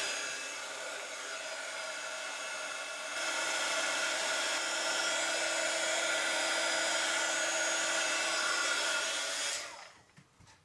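Embossing heat gun running steadily, blowing hot air to melt and set silver embossing powder. It gets a little louder with a low hum about three seconds in, then switches off just before the end.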